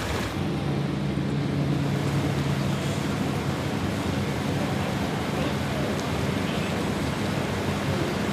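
A vehicle engine running at a steady low speed, a constant low hum over an even rushing road noise.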